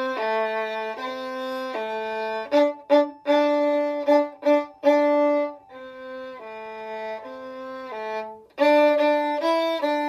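Solo violin played with the bow: a simple melody of held notes with a few short ones, dropping to a soft passage in the middle and turning loud again near the end.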